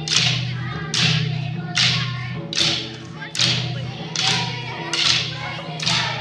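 Mandar drums playing a steady dance beat, a sharp bright stroke about every 0.8 seconds, over a low steady drone.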